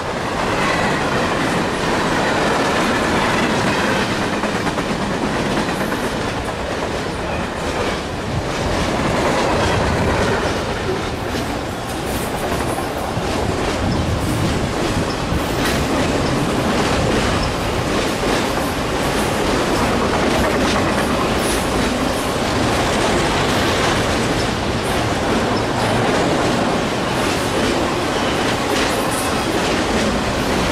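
Freight cars of a long train rolling past at speed: a steady rumble with the wheels clicking over rail joints throughout.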